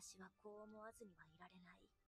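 Faint speech: a woman's voice speaking quietly, the anime's subtitled dialogue played low under the room.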